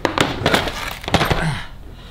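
Two electric skateboards, a Boosted board and a Boosted Mini S, being set down upside down on a desk: a string of hard knocks and clinks with brief ringing in the first second and a half.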